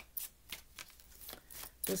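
A deck of tarot cards being shuffled by hand: a run of quick, uneven card slaps and flicks.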